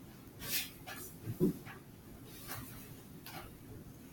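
Quiet classroom room tone with a few faint, short hissy sounds, such as breaths or small movements, and a soft thump about one and a half seconds in.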